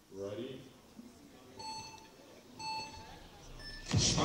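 Speed-climbing race start signal: two lower electronic beeps about a second apart, then a short higher beep that sends the climbers off the wall's start.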